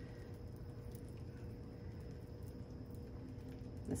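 Soft, faint taps and scrapes of a silicone spatula against a glass baking dish as rice and salmon are spooned out, over a low steady background hum.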